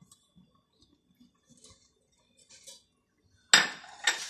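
Wire whisk against a metal saucepan of milk and cream: a few faint light taps, then a sudden loud metallic clatter about three and a half seconds in as whisking starts again.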